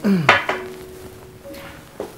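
A cup set down on a glass-topped table, clinking twice in quick succession, over a faint held piano note.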